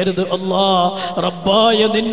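Islamic devotional chanting by men's voices: a steady, sustained low note held throughout, under a wavering melodic line of recitation.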